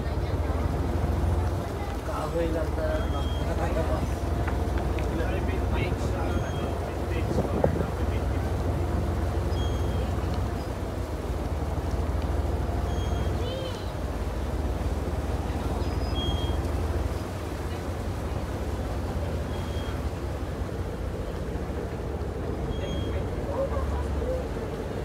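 A small boat's engine running steadily, a low rumble under the ride, easing slightly after about two thirds of the way through. People talk over it.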